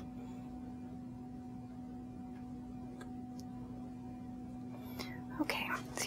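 Steady low electrical hum with faint room noise, and two faint clicks about halfway through. Near the end a brief rustle, and a woman's voice begins.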